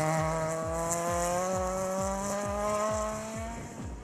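Rally-prepared Honda Civic's engine pulling hard under acceleration, its pitch climbing steadily for about three and a half seconds, then fading as the car drives away. Background music with a steady beat underneath.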